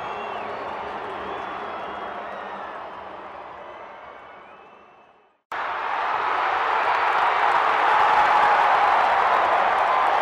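Spectator crowd at a cricket ground: a steady din of chatter and shouting with some clapping, fading out to silence about five seconds in, then cutting back in abruptly and louder.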